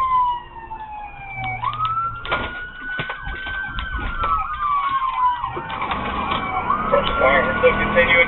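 Police siren on wail, its pitch slowly falling, jumping back up and falling again in long sweeps, with a second faster-cycling siren sweeping over it for a couple of seconds in the middle.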